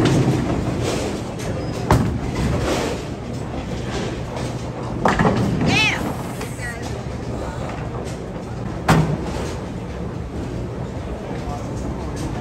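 Bowling alley din: a steady rumble of balls rolling down the lanes under background chatter, with sharp crashes of pins or balls about two seconds in and again near nine seconds. A short high voice calls out around six seconds.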